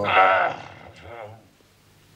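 A man crying out in pain as his wound is treated: a loud, wavering cry, then a shorter second one about a second in.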